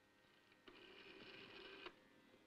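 A faint, steady burst of machine noise from radio-room equipment. It starts about two-thirds of a second in and cuts off abruptly near the end.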